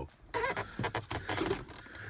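Rustling and light clattering handling noise as a lidded foam soda cup is lifted out of a car's cup holder, a dense run of quick scratchy clicks.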